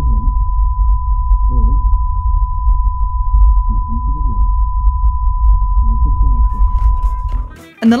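A steady high-pitched 1 kHz test tone over a deep rumbling cinematic bass, with low-pass-filtered, muffled dialogue drifting in and out underneath: a layered 'shell-shocked' effect for a character who has tuned out. The tone and rumble cut off about seven and a half seconds in.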